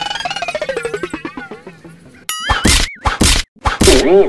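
Comic background music with a long falling glide, then a wobbling cartoon-style tone and three loud whacks about half a second apart near the end, as the blindfolded player swings a bamboo stick in a pot-breaking game.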